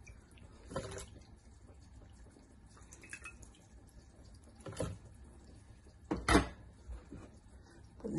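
Soaked dried chiles being moved from a bowl into a plastic blender jar: three short wet plops and knocks, the loudest a little after six seconds, over a quiet room.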